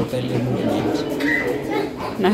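Indistinct people's voices talking, with a short high tone a little over a second in.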